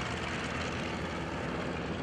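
Steady drone of a WWII light liaison airplane's piston engine and propeller flying past overhead.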